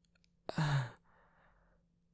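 A man's short voiced sigh about half a second in, falling in pitch, trailing off into a soft breathy exhale.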